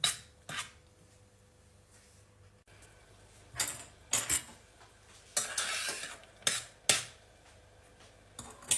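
A metal spoon clinking and scraping against a stainless steel saucepan while the strawberries are stirred: a few sharp clinks, one just at the start, a cluster about four seconds in and two more near the end, with quiet gaps between.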